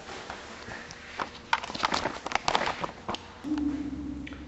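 Camera being picked up and moved by hand: a quick run of irregular clicks and knocks. A steady low hum starts near the end.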